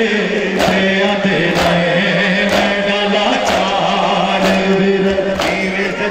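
Crowd of male mourners chanting a noha together, with a sharp slap of chest-beating (matam) about once a second keeping the beat.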